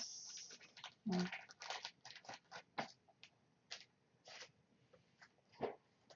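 Faint, scattered clicks and rustles of sports cards in plastic holders being handled and set down, with a brief pitched sound about a second in.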